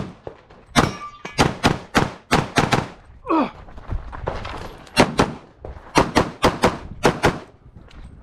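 Semi-automatic competition pistol firing fast strings of shots, about eight in quick succession, a pause of about two seconds, then about eight more.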